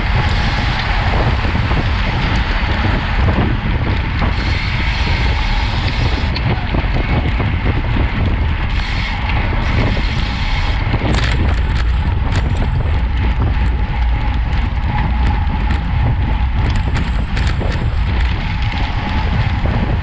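Wind rushing and buffeting over a bicycle-mounted action camera's microphone as a road bike races at speed, with a steady low rumble from the tyres and road. From about eleven seconds in, scattered light clicks and rattles run through it.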